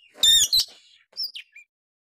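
Oriental magpie-robin (kacer) singing: a short burst of song a quarter second in, a fainter phrase about a second later, then it stops.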